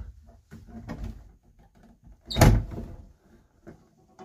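Roof emergency exit hatch of a bus being unlatched and pushed open: a few light clicks and knocks, then one loud clunk about two and a half seconds in.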